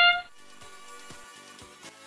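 The field's match-start sound effect, a loud electronic horn-like chord, holds and then cuts off suddenly a fraction of a second in. What follows is quieter arena sound with faint music and a few scattered knocks.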